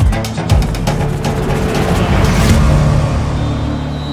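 Background music with a heavy, steady drum beat.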